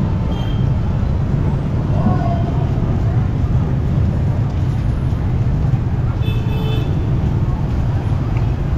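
Busy street noise: a steady low rumble with scattered voices from the crowd, and a brief vehicle horn toot about six seconds in.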